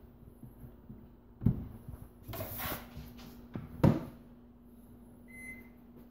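Two sharp knocks, about a second and a half in and again near four seconds, with lighter clicks and rustling between, as the microwave and its wooden shelf are handled. A faint steady hum runs underneath.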